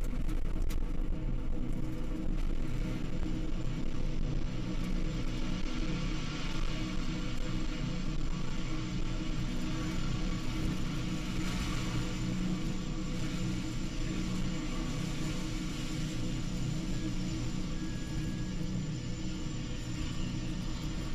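Falcon 9 first stage's nine Merlin 1D engines during ascent, heard from the ground as a steady low rumble that slowly fades as the rocket climbs away.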